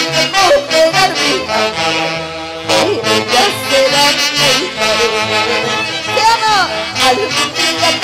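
A live band with a saxophone section playing an instrumental passage, the melody wavering in pitch over a steady bass beat.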